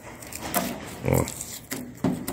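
Heat-softened blue vinyl sticker letter being peeled slowly off a van's painted side panel, the adhesive letting go with a faint crackling.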